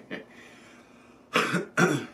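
A man coughs twice in quick succession about a second and a half in, after a brief laugh at the start.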